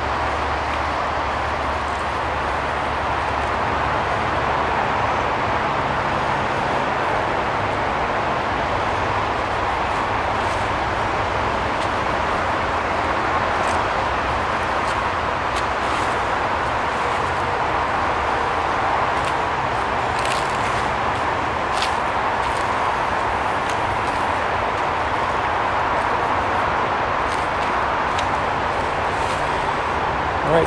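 Steady wash of distant road traffic, with a few faint ticks now and then.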